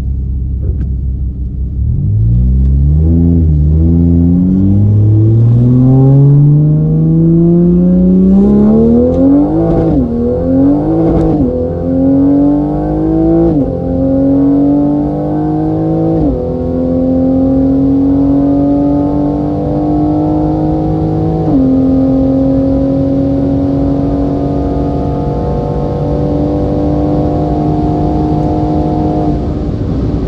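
Tuned Toyota Supra A90 with a single BorgWarner EFR9280 turbo, heard from inside the cabin, launching and accelerating at full throttle. The engine climbs in pitch through a series of upshifts, each a sudden drop in pitch, coming further apart as speed builds. It then holds a nearly steady high pitch near top speed and falls away as the throttle is lifted near the end.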